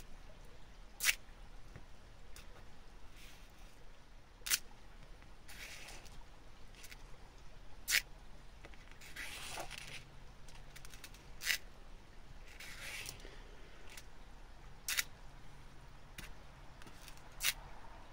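Thin metal chain on a wooden tabletop, moved by a fingertip: a sharp little click about every three to four seconds, with a few soft hisses between, in an otherwise quiet room.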